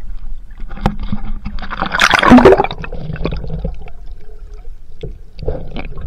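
Sea water splashing and gurgling around a handheld camera as it is dipped from the surface under water, with scattered knocks and one loud splash about two seconds in.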